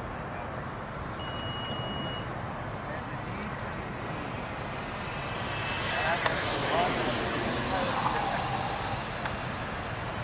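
Electric ducted fans of a Freewing F-22 RC jet on 8S power flying past: a steady rushing whine that swells about six seconds in, with a high tone sliding down in pitch as the jet goes by.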